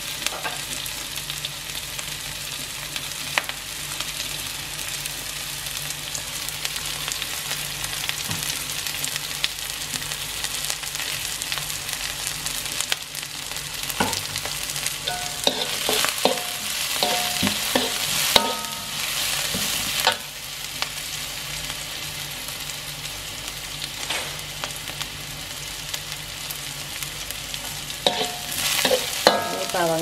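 Minced garlic and onion sizzling in oil in a wok, stirred with a metal spatula that clicks and scrapes against the pan, with the stirring busier and louder for a few seconds in the middle. The aromatics are being sautéed until they start to brown.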